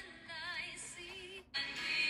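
Recorded worship song playing: a solo voice sings the verse with vibrato over accompaniment. The sound cuts out for an instant about three-quarters of the way through, then the music resumes.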